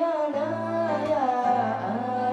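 A Nanwang Puyuma folk song performed live: a man sings held, wavering notes over acoustic guitar accompaniment.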